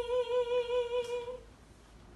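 A woman singing one long held note in Javanese sinden style, with a slight wavering vibrato, fading out about a second and a half in. The last ring of the gamelan's bronze keys dies away under it.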